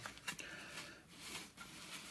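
Faint sliding and shuffling of hexagonal game-board pieces pushed together by hand on a table, with a couple of light knocks.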